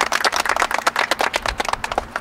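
A small group of people applauding, a quick, irregular patter of hand claps that dies away near the end.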